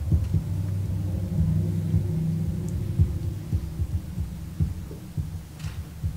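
Microphone handling noise: a low rumble with irregular dull thumps, as a desk microphone is knocked or handled, over a steady low hum.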